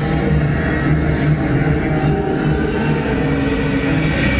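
Live punk rock band playing loud, with distorted electric guitars and bass holding low, sustained notes.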